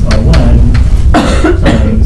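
A man coughs about a second in, amid sharp taps and scrapes of chalk writing on a blackboard.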